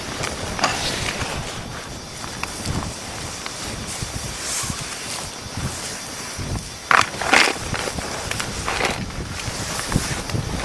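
Paintbrushes sweeping and scraping over loose shale fragments and dirt in irregular strokes, with a few louder scrapes about seven seconds in. Wind rumbles on the microphone underneath.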